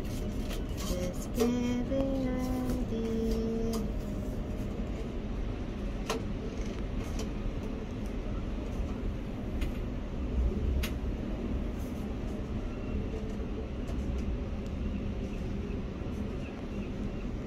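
Steady low rumble inside an observation-wheel gondola, with a few sharp clicks. In the first few seconds a brief pitched sound steps up and down in pitch.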